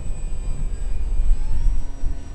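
Small electric RC plane's brushless motor and propeller (a CF-2812 1400KV motor turning an 8x6 prop) whining faintly overhead, rising a little in pitch about one and a half seconds in as the throttle comes up. A low wind rumble on the microphone is louder than the motor.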